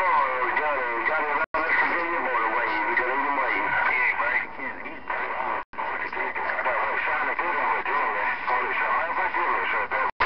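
CB radio receiving voices off the air through its speaker. The speech is garbled and hard to make out, with faint steady whistle tones beneath it. The audio cuts out briefly twice: about a second and a half in, and again just past the middle.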